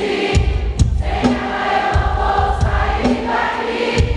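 Live amplified Catholic praise music with many voices singing together over a steady drum beat, as a congregation sings along in a large hall.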